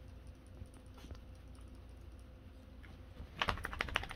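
A small dog moving on the bedding: a burst of quick clicks and scratching near the end, over a steady low hum.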